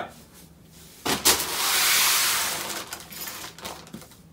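A knock about a second in, then a plastic bag rustling loudly for about two seconds as a bag of shoes is handled and set on the floor, followed by a few small handling sounds.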